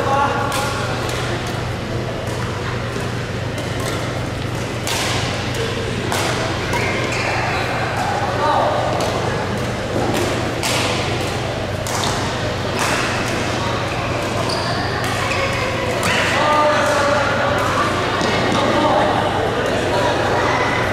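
Badminton rackets striking shuttlecocks, sharp cracks at irregular intervals echoing in a large hall, with players' voices between them.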